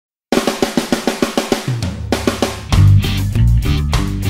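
Intro of an independent rock song: after a brief silence, a fast drum fill of sharp strokes, about eight a second, joined by a low held bass note. About two-thirds of the way in, the full band comes in louder, with bass and guitar.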